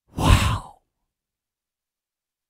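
A man's short, breathy sigh or exhale into a close microphone, lasting about half a second just after the start.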